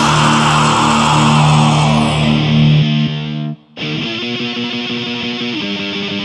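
Heavy metal band lets a held distorted chord ring out with a cymbal wash. It breaks off in a brief gap a little past halfway, then a lone distorted electric guitar comes in playing a slow riff of sustained chords.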